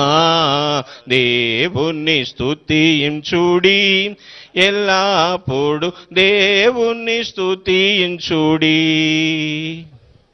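A Telugu Christian hymn of praise sung by one voice, in long held notes with a wavering pitch and short breaks between phrases. The singing stops near the end.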